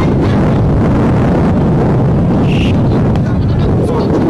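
Wind buffeting the camcorder microphone in a loud, steady rumble, with voices from the crowd underneath.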